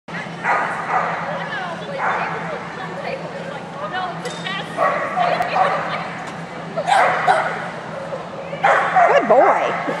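A dog barking and yipping in short bursts every couple of seconds, with the most rapid run of barks near the end.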